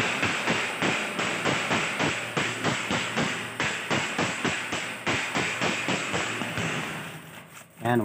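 Stainless checker-plate floor scrubbed hard by hand along its tack-welded seam: rapid back-and-forth scratching strokes, about five a second, stopping shortly before the end.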